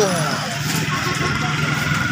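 A motor vehicle engine running steadily on a busy road, with people's voices around it.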